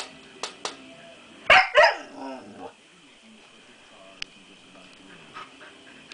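Siberian Husky puppy giving two loud barks about a second and a half in, trailing into a lower, wavering vocal sound for about a second. A quick run of sharp clicks comes before the barks, and a single click later on.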